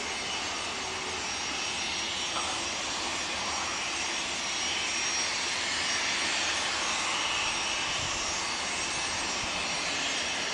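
Embraer Legacy 500 business jet taxiing, its twin Honeywell HTF7500E turbofans running at low taxi power. A steady jet rush carries a thin high turbine whine that swells slightly in the middle.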